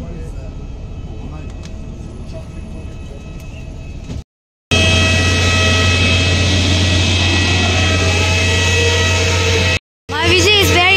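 Inside a crowded airport apron bus: a low vehicle rumble with a murmur of voices. After a sudden cut about four seconds in comes a much louder, steady aircraft noise on the airport apron: a deep hum topped by several steady high whining tones.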